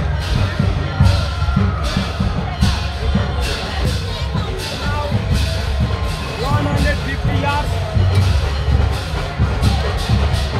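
Procession kirtan: khol (mridanga) drums beating a busy, irregular rhythm under group singing and the voices of a walking crowd, with a bright percussive hit about once a second.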